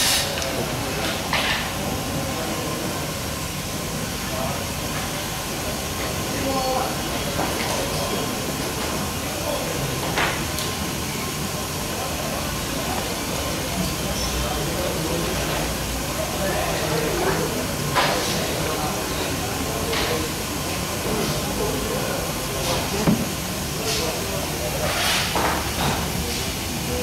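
A liquid sample is drawn from a process sample point into a plastic beaker: a steady hiss of running liquid, with about half a dozen sharp knocks of plastic containers and fittings being handled.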